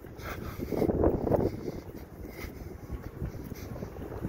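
Wind buffeting the microphone over street traffic noise, with a louder swell about a second in.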